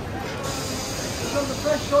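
A steady hiss that starts suddenly about half a second in and stops about a second and a half later, over background chatter.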